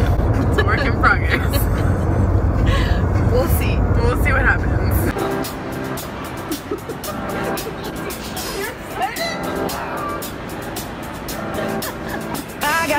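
Car cabin road noise, a steady low rumble with faint voices, for about five seconds. Then an abrupt cut to the noise of a shopping mall: background music and crowd chatter.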